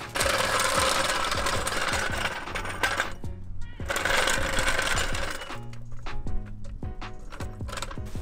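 Red steel floor jack rolled across an asphalt driveway, its wheels giving a dense rattling grind in two stretches with a short break, over background music.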